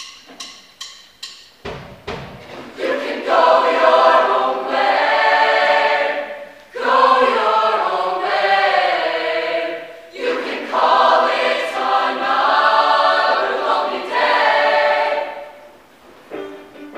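A mixed choir singing sustained chords in three long phrases, with short breaks between them. A few sharp clicks come in the first two seconds before the singing begins.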